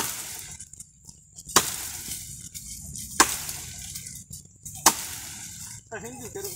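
Four chopping blows into a wooden tree stem, sharp and evenly spaced about a second and a half apart, as a stake is cut down.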